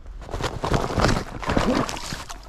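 Boots breaking through the shelf ice at the creek's edge and plunging into the water: crackling ice and snow and splashing, starting suddenly just after the beginning.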